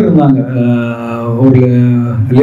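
A man's voice drawn out in long, chant-like syllables on a nearly steady pitch, with a short break about a second and a half in.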